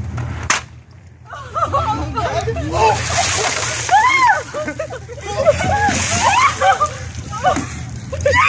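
Buckets of ice water being tipped over people's heads one after another, splashing and pouring onto them and the pavement. Voices cry out over the splashing.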